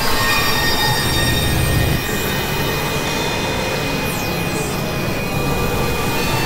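Experimental electronic noise music: dense layered synthesizer drones, many sustained high squealing tones over a noisy low rumble, with a high sweep falling in pitch about four seconds in.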